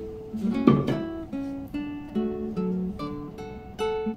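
Background music of a solo acoustic guitar playing a slow run of plucked notes, with one louder burst just under a second in.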